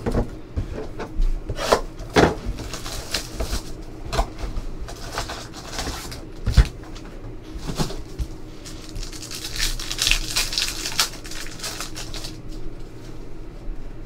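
Hands handling a box of trading card packs and the packs themselves on a tabletop: scattered knocks and taps as the box and packs are moved and set down, with a stretch of crinkling plastic wrapping being torn open about two-thirds of the way through.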